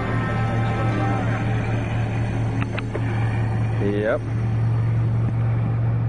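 A vehicle engine idling steadily, with a music soundtrack fading out in the first second or so and a brief voice sound about four seconds in.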